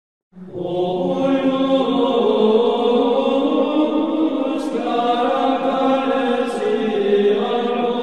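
Sacred vocal chant as opening music: voices singing long held notes that shift slowly in pitch, starting just after the beginning.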